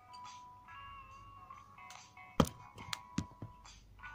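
Background music with steady tones, broken about two and a half seconds in by one sharp knock and then a few lighter clicks as a pair of scissors is handled and put down.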